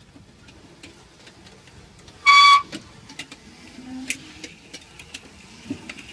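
Homemade Litz wire twisting machine running, with a light ticking, a couple of ticks a second. About two seconds in, a short high, steady whistle-like tone sounds for about half a second.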